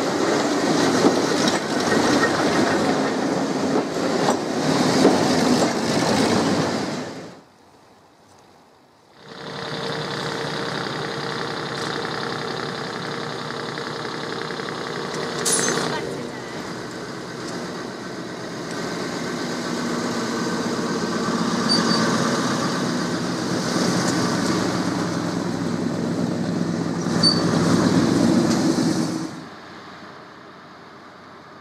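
A first-generation diesel multiple unit passing close by, its wheels clattering over the rail joints. After a short drop in sound, the unit's underfloor diesel engines run with a steady drone that grows louder as it approaches, with a sharp click about halfway through.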